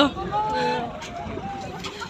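Low rumble of a slowly moving vehicle, under faint voices calling goodbye.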